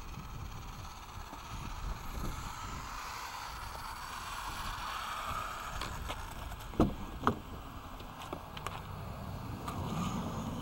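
Radio-controlled buggy driving back across asphalt, its motor and tyres making a whir that builds and then fades away as it slows to a stop. Two sharp knocks near the end are the loudest sounds, followed by a few lighter clicks.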